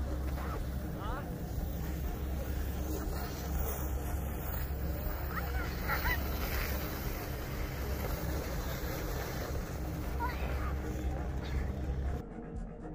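Steady low rumble of wind on the microphone, with faint distant voices and calls from people on the sledding slope.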